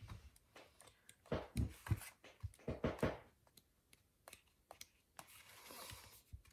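Paper sticker-book pages being flipped and handled, giving soft rustles and light taps, thickest in the middle, with a longer rustle near the end.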